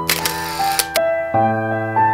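Camera shutter sound effect: a click and a bright burst of noise lasting about a second, laid over gentle piano music that plays on throughout.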